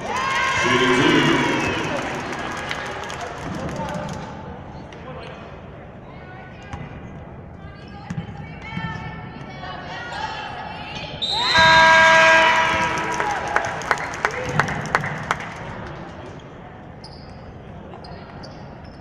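A basketball bouncing on a hardwood court, with a run of sharp, evenly spaced bounces a little after the middle. Around it, spectators and bench players shout and cheer, loudest near the start and in one loud shout just before the bounces.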